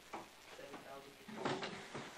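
Faint, distant voices of students talking among themselves, with a louder stretch about a second and a half in.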